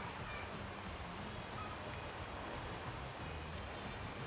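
Quiet, steady background noise with no distinct events.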